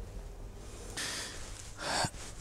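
A man's two short, audible intakes of breath, about a second in and again near the end, over quiet room tone.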